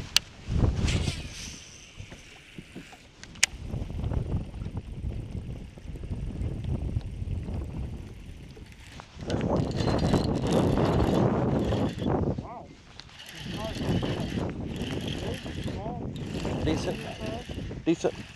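Wind gusting across the microphone: an uneven rumble that swells about nine seconds in and again shortly after a brief lull.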